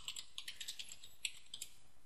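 Faint computer keyboard typing: a quick run of light keystrokes as a short filename is typed.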